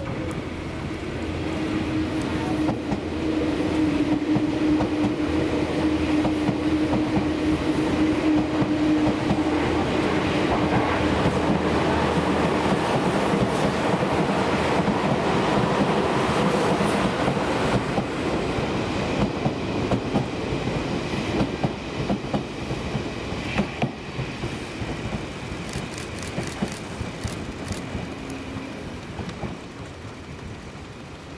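A Seibu New 101 series electric train towing an Odakyu 8000 series set passes at close range, its steel wheels clattering over the rail joints, while a second Seibu commuter train runs by on the adjacent track. A steady hum runs through the first dozen seconds; the sound is loudest in the middle and fades toward the end.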